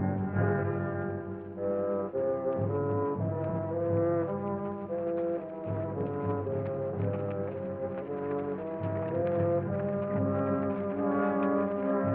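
Orchestral background score, brass carrying a melody of held notes that step up and down over a sustained low accompaniment.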